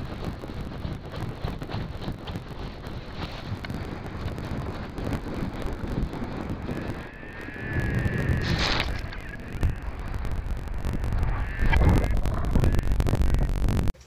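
Wind buffeting the microphone of a helmet-mounted action camera as a paraglider launches and flies fast over a snowy slope. The noise grows heavier and louder in the second half, with a brief sharp hiss about nine seconds in.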